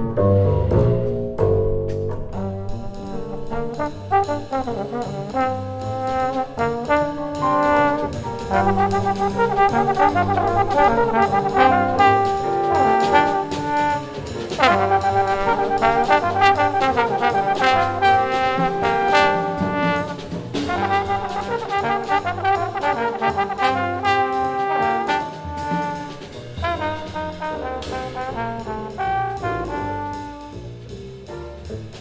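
Live jazz: two trombones playing a melodic line, at times together, over a walking upright double bass and a drum kit.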